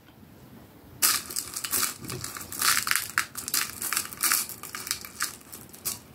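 Crinkling and rustling of small plastic bead packaging being handled as a tiny bead is fished out, starting about a second in as a quick, irregular run of crackles.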